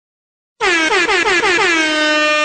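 Air horn sound effect: about half a second in, a rapid run of short blasts, each dropping in pitch, then one long held blast.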